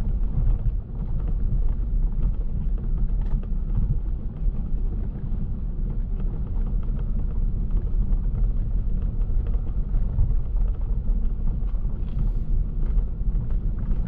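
Car driving along a rural road, heard from inside the cabin: a steady low rumble of engine and tyre noise.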